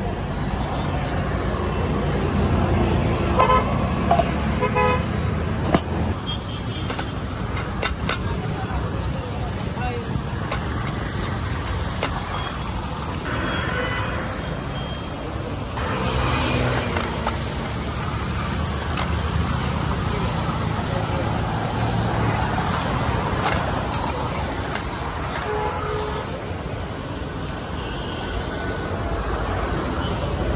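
Roadside street noise: a steady rumble of passing traffic with vehicle horns tooting a few seconds in and again later, and people talking in the background.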